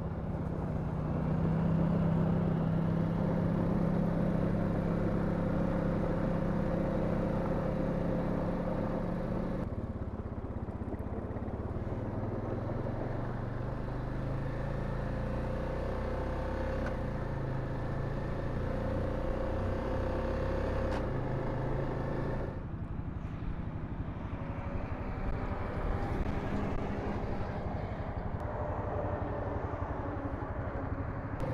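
Honda Rubicon ATV's single-cylinder four-stroke engine running steadily as the quad is ridden, with tyre and wind noise. The sound changes abruptly twice, about a third and about three quarters of the way through, where riding clips are cut together; the engine note is strongest in the first part.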